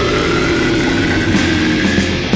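Death-doom metal: a sustained, heavily distorted electric guitar chord ringing out with a slowly rising high note above it, the drums nearly dropping out.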